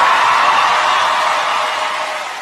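Theatre audience applauding and cheering for a contestant about to perform, loudest at the start and slowly fading.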